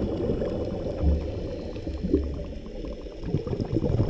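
Underwater ambience picked up by a submerged camera: a low, churning rumble of moving water, with faint scattered clicks.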